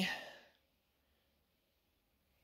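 The tail of a man's spoken word trailing off into a breathy fade within the first half second, then near silence.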